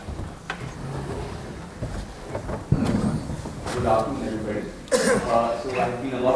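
A few faint knocks, then a sharp thump about three seconds in, then a man's voice starting to speak at the microphone.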